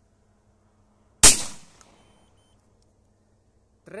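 A single 12-gauge shotgun shot about a second in: a hand-loaded slug round fired with a weak Nobel Sport primer. The sharp report dies away over about half a second.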